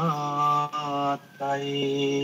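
A man chanting a Pali verse in long notes, each held on a steady pitch, with a brief break a little over a second in.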